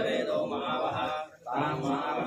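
A male voice chanting Hindu mantras in a steady recitation during a puja, with a brief pause about two-thirds of the way through.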